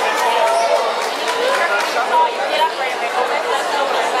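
Indistinct chatter of many overlapping voices in a gymnasium.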